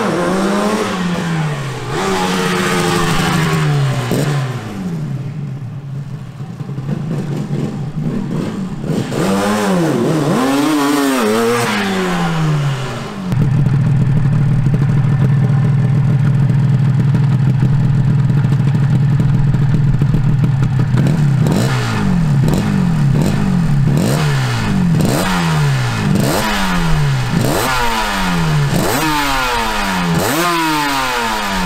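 Suzuki RG250 Walter Wolf two-stroke twin. It is first ridden, its revs rising and falling, then about 13 seconds in it runs steadily at a standstill. From about 21 seconds its throttle is blipped again and again, roughly once a second, each rev rising and falling quickly.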